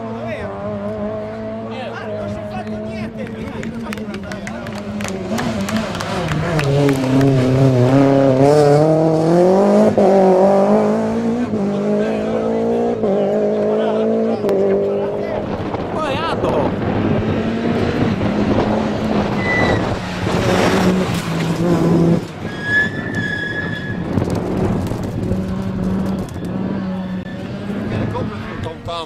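Rally car engines at racing revs as cars pass on a stage: the engine note dips and climbs through the gear changes and is loudest about 6 to 11 seconds in.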